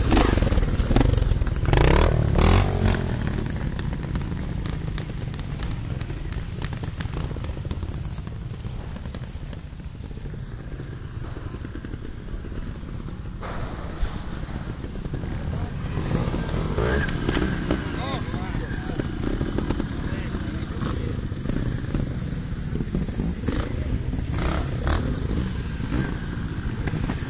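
Trials motorcycle engine running at low revs, louder in the first few seconds, with voices in the background.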